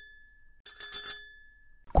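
A small metal bell rung twice, each ring a short trill of quick strikes that rings on and fades away. The first is dying away at the start, and the second starts a little over half a second in. A voice begins right at the end.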